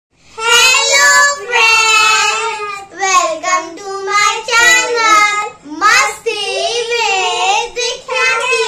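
Children singing a short song, in a string of sung phrases with held notes and brief breaks between them.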